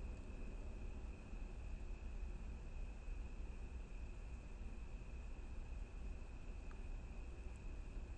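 Faint, crystalline chorus of crickets: one steady high-pitched trill that runs on without a break.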